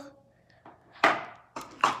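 Two short knocks of small plastic toy figures being set down on a hard countertop, one about a second in and one near the end.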